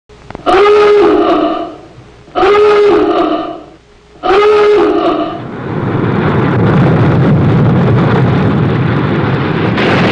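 Submarine diving-alarm klaxon sounding three times, each blast about a second and a half long, with a pitch that swoops up and then holds. After the third blast a steady, loud rushing noise begins.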